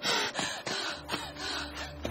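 A person's short, breathy gasps, a few of them in the first second. A low steady hum, likely the scene's score, comes in about a second in.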